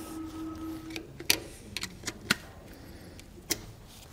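A few sparse, light metallic clicks and taps as gloved hands work the cotter pin out of the castle nut on a trailer axle's hub.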